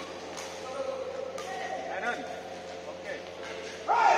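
Badminton rackets striking a shuttlecock during a doubles rally: two sharp hits, about half a second and a second and a half in, ringing in a large hall, with players' voices throughout and a sudden louder call just before the end.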